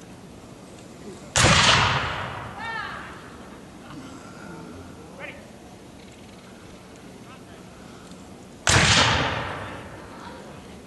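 Two black-powder musket shots fired with blanks, the first about a second in and the second near the end, some seven seconds apart. Each is a sharp crack with an echo that dies away over about a second.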